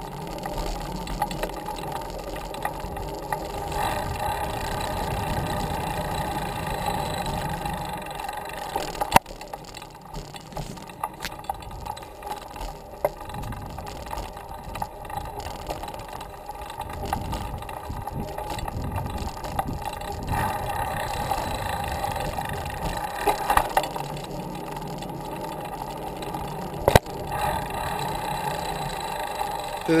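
Specialized Langster fixed-gear bicycle being ridden: steady chain-and-drivetrain running noise and tyre rumble, heard up close through a camera mounted on the frame. There are a couple of sharp knocks, one about nine seconds in and one near the end.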